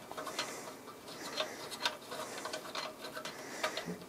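Quiet, irregular small clicks and ticks of hands handling cables and parts inside a metal PC case while fitting an expansion card, with a few sharper clicks spread through.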